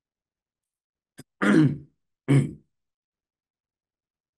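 A man clearing his throat twice, about a second and a half in and again a second later, just after a faint click.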